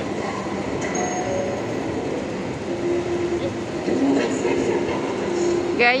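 Steady background hubbub of a large indoor shopping mall: a continuous noisy hum with brief faint held tones drifting through, and a voice starting at the very end.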